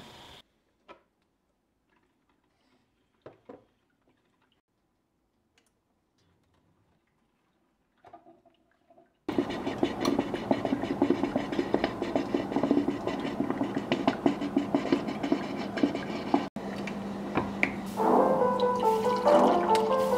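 Black & Decker drip coffee maker brewing: a loud, steady gurgling hiss of water that starts suddenly about nine seconds in, after a few faint spoon clicks. Piano music comes in near the end.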